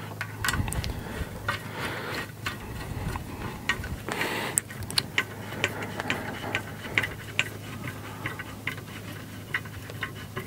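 Irregular light clicks and taps, with a short rustle about four seconds in, as hands fit plastic wire-harness tubing over a bundle of wires against an aluminum frame plate. A steady low hum runs underneath.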